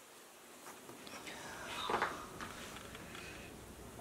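Faint rustling and handling noise close to the microphone as the camera is set on its tripod, with a louder rustle about two seconds in.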